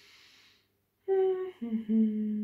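A woman humming with her mouth closed: a short higher note about a second in, then a lower note held steadily.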